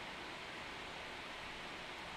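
Steady, even background hiss with no distinct sounds in it.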